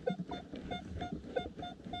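Minelab X-Terra Pro metal detector giving its target tone: a short beep repeated about three or four times a second as the coil is swept back and forth over a buried target. The high target ID (82 on the display) marks a strong non-ferrous signal.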